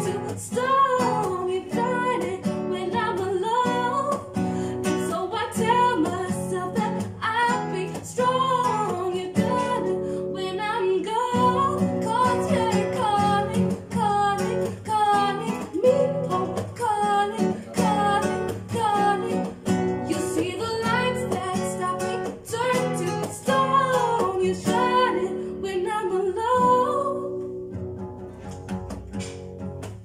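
A woman singing over a strummed and plucked acoustic guitar, a live vocal-and-guitar song; the music fades out over the last few seconds.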